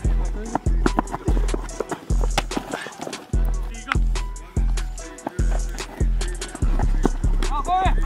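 Background music: deep bass hits on a steady beat with fast hi-hat ticks over it.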